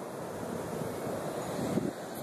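Surf washing onto a sandy beach, mixed with wind on the phone's microphone: a steady hiss of noise.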